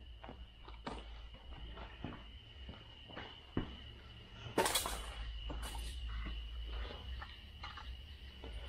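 Faint handling and moving-about noises in a garage: scattered light clicks and knocks, with one louder, brief clatter about four and a half seconds in, over a steady low hum and a faint, steady high-pitched tone.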